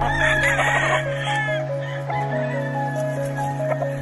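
A gamefowl rooster crows once in the first second and a half, a rough call that falls in pitch at its end, over background music with held notes.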